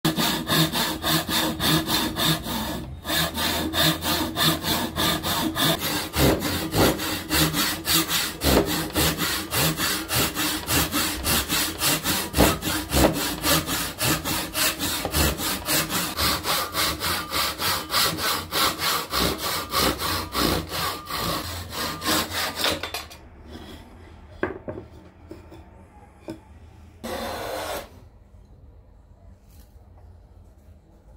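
Hand saw cutting through wood in fast, even back-and-forth strokes, about three a second. The sawing stops about three quarters of the way through, leaving quieter handling sounds and one short scraping stroke near the end.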